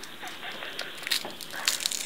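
Dried glue being peeled off the skin of a palm: faint, irregular crackles and small sticky clicks, a little stronger in the second half.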